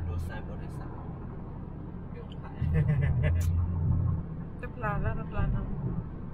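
Steady low road-and-engine rumble inside a car cruising at highway speed, with voices talking over it in the second half.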